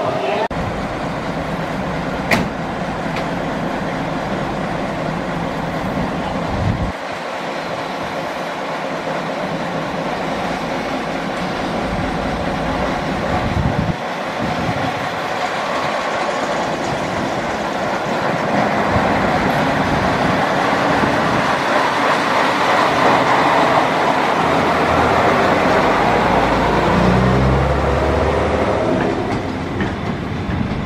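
Engines of the vintage M120.4 'Věžák' and M131.1 'Hurvínek' railcars running as the train pulls away slowly. The sound grows louder in the second half as the cars roll past close by, and there is one sharp click about two seconds in.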